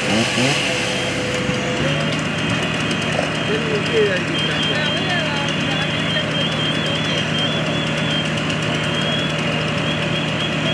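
A fireground engine runs steadily, its pitch stepping up slightly about two seconds in, under scattered voices. A rapid electronic beeping sounds for a few seconds in the middle.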